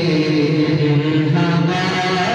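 Male voices singing a naat, an Urdu devotional poem, without instruments, holding long notes that slide slowly from one pitch to the next.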